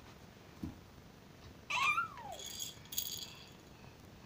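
A baby gives a short low grunt, then a little past the middle a high squeal that rises and falls in pitch, followed by about a second of high rattling jingle.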